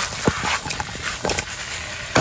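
Chicken pieces with pepper and onion sizzling in a non-stick frying pan on a wood stove, with a few short knocks as the pan and food are moved and stirred.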